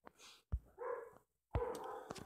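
A dog barking faintly, a short bark near the middle and another near the end, with small clicks just before each.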